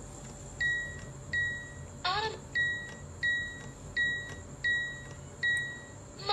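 Control-panel beeps of a Cuckoo electric multicooker: about seven short beeps of one high tone, spaced under a second apart, one for each press of its buttons while a menu and cooking time are set.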